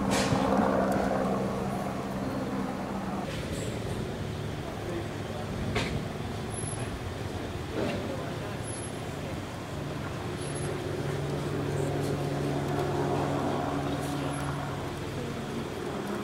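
A steady engine hum, like a large vehicle running nearby, under background voices, with a few sharp clicks.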